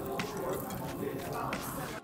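Biting into a crusty bagel loaded with lox and cream cheese, then chewing, with a few faint crunches.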